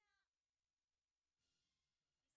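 Near silence, with faint talking voices: a brief one right at the start and another near the end.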